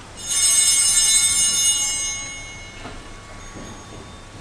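Altar bells (Sanctus bells) shaken once during the Mass: a bright, high ringing that starts suddenly, holds for about a second and a half, then dies away.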